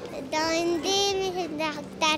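A young girl's high voice, in two long drawn-out, sing-song phrases followed by a few shorter syllables.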